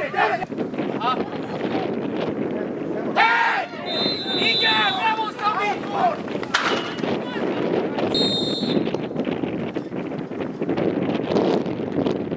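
Outdoor youth football match: players and coaches shouting in short calls, with two short blasts of a referee's whistle, one about four seconds in and one about eight seconds in, over steady wind noise on the microphone.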